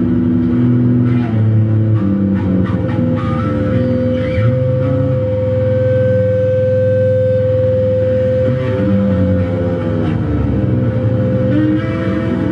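Yamaha BB electric bass played through a chain of effects pedals: layered, sustained low notes that shift every second or so, with one long higher tone held from about four seconds in until near eleven.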